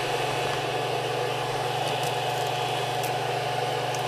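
Creality CR-10 3D printer's cooling fans running with a steady hum and a faint higher whine.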